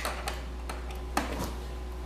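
A few sharp clicks from a hand-held plastic Dremel rotary tool being handled and plugged in, over a steady low hum.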